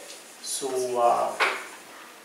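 A man's voice speaking one short phrase through a lectern microphone, then faint room tone for the last half second.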